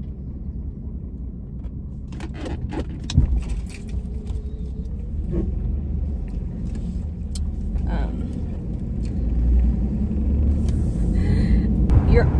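Inside the cabin of a 2002 Jeep Liberty on the move: a steady low engine and road rumble that grows louder toward the end as the car picks up speed. A few light clicks and one sharp knock come about two to three seconds in.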